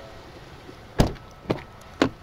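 2015 Ford F-150 crew cab doors being worked: one solid thump about a second in, then two lighter clicks about half a second apart as the rear door is opened.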